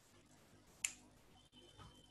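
A single sharp click a little under a second in, over faint room noise.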